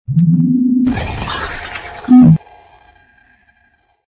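Animated intro sound effect: a short rising synth tone, then about a second of shattering, glassy rush, then one loud punchy hit a little after two seconds in, whose ringing tail fades away.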